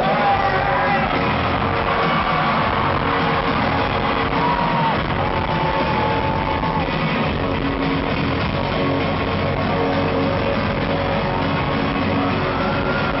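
Rock band playing live through a big PA, with distorted electric guitar, bass and drums, recorded from within the crowd so it sounds dull and boomy. A lead guitar line holds notes and bends one up about four seconds in.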